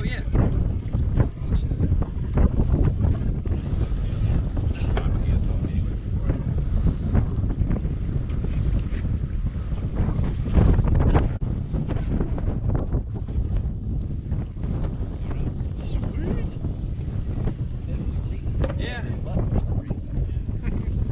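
Wind buffeting the microphone in a steady, fluctuating low rumble, with faint voices now and then.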